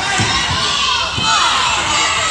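Crowd of young spectators shouting and cheering, many high voices overlapping at once.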